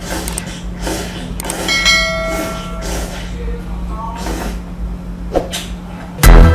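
A person eating instant noodles with chopsticks, slurping and chewing in short repeated bursts. A brief ringing tone about two seconds in, over a steady low hum.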